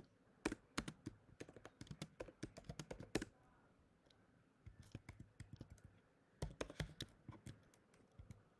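Typing on a computer keyboard: quick runs of keystrokes, faint, broken by short pauses of about a second.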